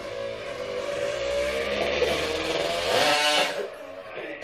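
A motor vehicle passing by, its engine sound building to a peak about three seconds in and then fading away.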